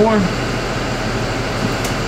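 Steady mechanical drone with a low hum underneath, holding even throughout.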